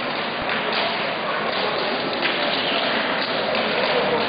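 Crowd noise in an indoor sports hall: a steady din of many voices with some scattered clapping.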